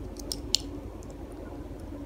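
A few light clicks of small Lego plastic pieces being handled and pressed together in the fingers, the sharpest about half a second in, over a steady low background hum.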